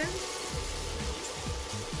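Chopped onion and garlic sizzling steadily in hot oil in a pan as they sauté.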